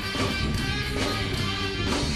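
Rock band playing live: electric guitars and bass over a steady drum beat.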